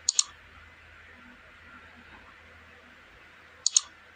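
Mouse-click sound effects: a quick double click at the start and another near the end, over a faint steady hiss.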